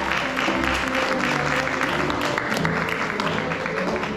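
Audience applauding over music.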